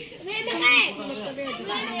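A group of children chattering and calling out over one another, with one child's loud high-pitched shout a little over half a second in.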